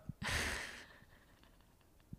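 A short breathy laugh: a single exhale of breath, close to the microphone, lasting about half a second and fading away.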